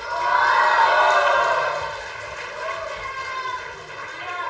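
Audience applauding and cheering, surging at once and fading after about two seconds.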